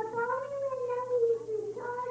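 A child singing a long held note that glides slightly up and then eases back down.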